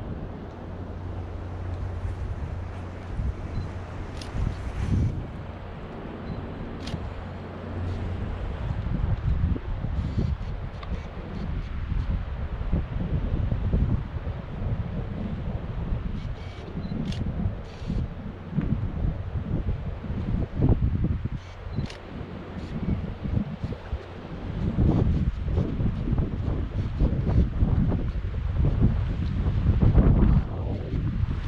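Wind buffeting an action camera's microphone in uneven gusts, with a low steady hum for the first several seconds and a few faint clicks.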